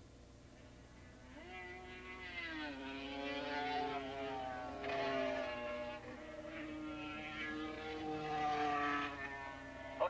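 Racing motorcycle engines at high revs, growing louder about a second in as the bikes come closer. Their pitch climbs, drops and climbs again as they accelerate and shift.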